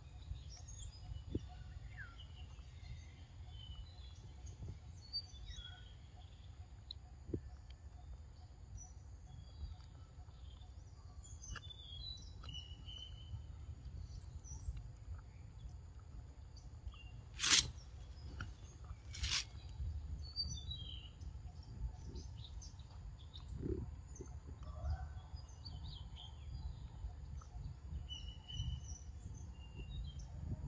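Forest ambience: scattered short bird chirps over a steady low rumble. Just past halfway come two sharp clicks, under two seconds apart.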